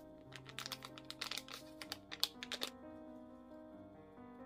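Background music, with a quick run of light clicks and taps from the handling of a wire-mesh flour sieve over a glass bowl; the taps start just after the beginning, the sharpest comes a little past two seconds, and they stop before three seconds.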